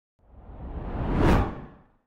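Intro whoosh sound effect that swells up over about a second and then fades away, leading into a logo reveal.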